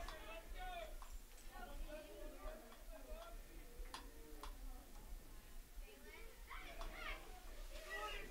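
Faint, distant voices of players and spectators calling out and chattering across the ballfield, with two sharp clicks about four seconds in.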